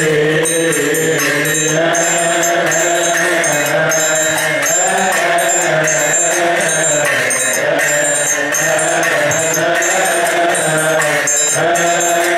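Coptic Orthodox liturgical chant sung by men's voices in unison, led by a voice through the church's sound system, with a triangle and hand cymbals struck in a steady beat.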